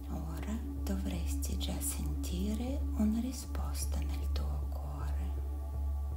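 Meditation background music, a steady low drone with held tones, under a soft whispering voice that comes and goes in short phrases.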